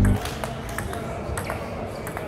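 Table tennis ball clicking sharply off the bats and bouncing on the table during a backhand rally, several short unevenly spaced hits, over the murmur of voices in the hall.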